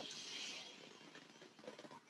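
A faint, soft breath out that fades within about the first second, leaving near silence.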